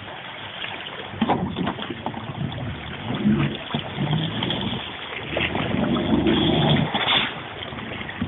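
Small motorboat's outboard engine revving in two pushes, about three seconds in and again around six seconds, as the hull drives up onto a floating drive-on dock, with water churning behind it.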